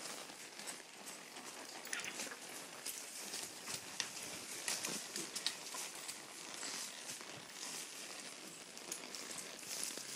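Several horses walking, their hooves falling in irregular clicks and knocks on dirt and rock.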